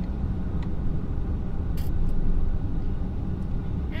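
Steady low road and engine rumble inside a moving SUV's cabin, with a brief hiss about two seconds in.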